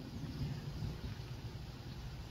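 Faint, steady low background noise of outdoor ambience, with no distinct event standing out.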